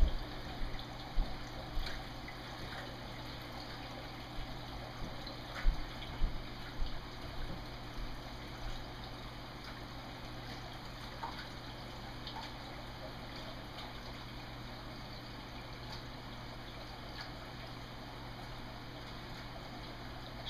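Water running steadily into an acrylic aquarium sump as it is filled for a leak test, with a low steady hum under it. A few short knocks sound in the first several seconds.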